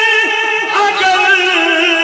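A naat, a devotional poem sung by a solo male voice, holding long, wavering notes.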